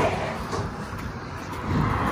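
Road noise of cars passing on a highway: the rush of one vehicle fades at the start, and another car's tyre and road noise swells near the end as it passes close by.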